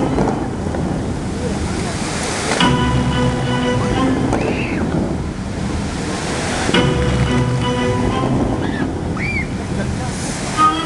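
Musical fountain show: music with long held chords from loudspeakers, and the rushing hiss of water jets shooting up and spraying back down. The water surges swell three times, at the start, just before 3 s and around 6 s, each leading into a new chord.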